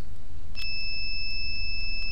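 A steady high electronic beep sounds from about half a second in and holds for about two seconds, over a steady low electrical hum. A single click comes just before the beep.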